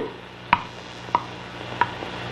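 Clock ticking: three sharp, evenly spaced ticks about two-thirds of a second apart, over a low steady hum.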